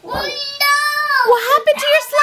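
A toddler's high-pitched, wordless sing-song vocalising: one long drawn-out call, then shorter wavering calls near the end.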